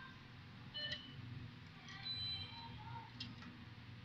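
Faint clinks of metal tongs against a stainless-steel tea-egg pot, a few light taps with short ringing tones, over a low steady hum of store equipment.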